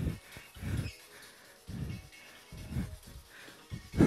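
A person's hard exhalations, about five short breaths a second or so apart, one on each abdominal crunch, with faint music underneath.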